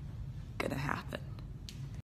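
A woman's short, breathy vocal sound about half a second in, lasting about half a second, followed by a few faint clicks, over a low steady hum.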